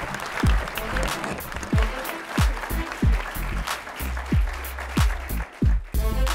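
Audience applause with closing music over it: a beat whose deep kick drum hits drop in pitch, starting about half a second in, with a sustained bass coming in about two-thirds of the way through.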